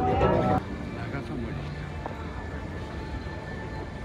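Background music that cuts off abruptly about half a second in, followed by steady outdoor city ambience with indistinct voices.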